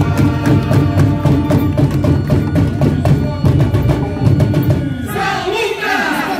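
Samba school bateria playing a samba-enredo, dense drums and sharp percussion strokes under amplified singing. About five seconds in, the drumming drops away and voices carry on alone.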